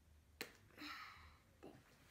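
A single sharp click of a small plastic paint-bottle cap, followed about half a second later by a short soft hiss and a fainter knock near the end, over near silence.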